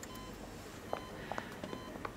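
Faint, short electronic beeps from a hospital patient monitor, repeating about once a second, with a few soft taps.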